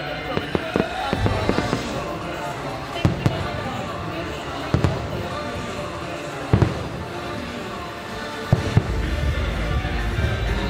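Fireworks going off: sharp bangs at uneven intervals, several in quick pairs, over music and voices.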